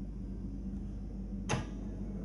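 Antique LeCoultre cylinder music box mechanism turning, a low steady hum with a single sharp click about one and a half seconds in, before any notes are plucked from the comb.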